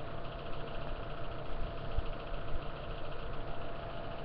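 Steady mechanical hum of room background noise, like a small motor or fan running, with no distinct events.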